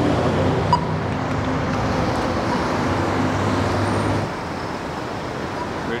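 City intersection traffic: a motor vehicle's engine running steadily close by, falling away about four seconds in, over general road noise.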